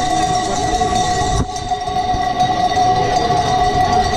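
Bells on a flock of sheep ringing together in a steady jangle, over many hooves clattering on asphalt.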